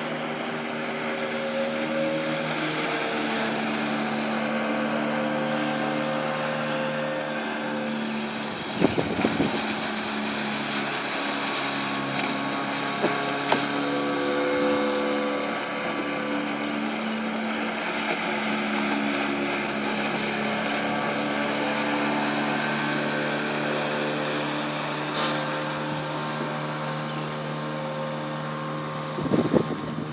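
A small motorboat's engine heard across open water, its note rising and falling as the boat circles and changes speed, with wind on the microphone. A few short sharp knocks come about a third of the way in and again later.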